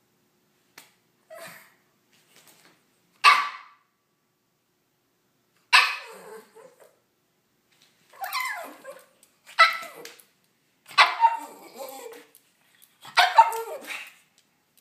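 Pug barking to demand food: a couple of faint sounds, then about six loud, short barks, one to three seconds apart and coming closer together in the second half.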